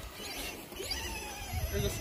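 Faint voices of people talking in the background, with a low fluttering rumble of wind on the microphone.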